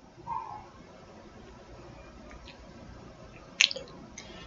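Quiet room tone with a faint hiss. There is a soft short sound just after the start and a brief sharp click near the end.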